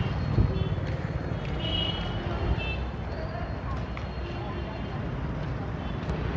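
Street traffic: motorcycle and scooter engines passing with a steady low rumble, under faint background chatter of people.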